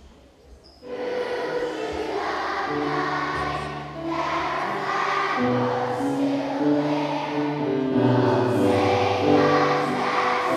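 A choir of young schoolchildren singing a patriotic song with accompaniment, starting about a second in.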